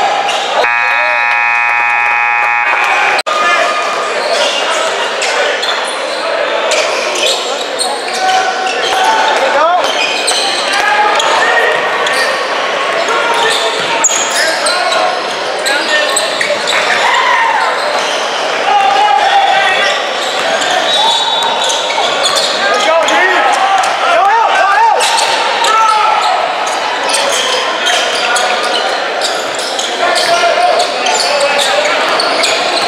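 A gym scoreboard buzzer sounds one steady tone for about two and a half seconds near the start. Then come basketball game sounds in a large echoing gym: the ball bouncing and hitting the floor, sneakers squeaking on the hardwood, and players and spectators calling out.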